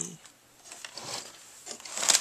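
Faint handling noise: soft rustles and a few light clicks.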